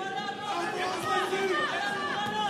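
Arena crowd of boxing spectators calling out and shouting over one another, many voices at once in a large hall, with a single sharp knock about a second in.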